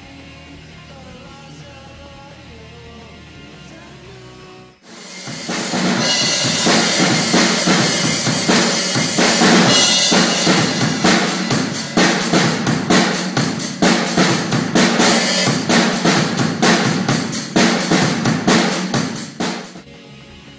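Quiet music for about the first five seconds, then an abrupt switch to an acoustic drum kit played loud. Kick, snare and a constant wash of cymbals go at a fast, steady beat, and the kit stops suddenly just before the end.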